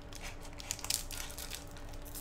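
Foil trading-card booster pack crinkling in the hands in a run of small irregular crackles as it is gripped at the top to be torn open.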